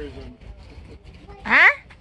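A person's short vocal exclamation, rising sharply in pitch about one and a half seconds in, against low background murmur.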